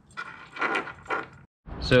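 Light metallic clinking and rattling from the supercharger's metal shroud and its bolts being handled and fitted, in three short bursts.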